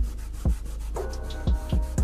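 Fingers rubbing oil pastel into paper on a wooden table to blend the colours. It comes as a series of short strokes, each with a dull thump, over a low steady hum.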